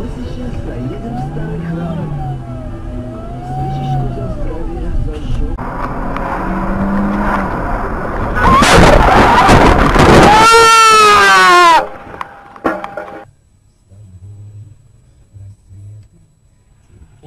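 Car crash: noise builds over a few seconds to a loud burst. The burst ends in a squeal falling in pitch and cuts off abruptly about twelve seconds in. Voices are heard before it.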